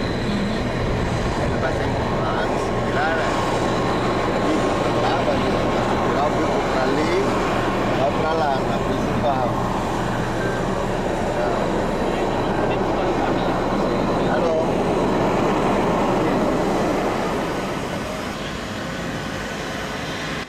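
Airport apron ambience: a steady mechanical hum with indistinct voices in the background, easing off a little near the end.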